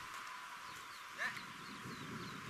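A stray dog gives one short yelp about a second in, falling in pitch, over a steady hiss.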